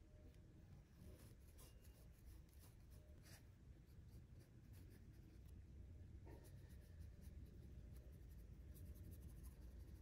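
Faint strokes of a small round brush laying gouache on paper: soft, irregular scratchy brushing with light ticks from the brush tip.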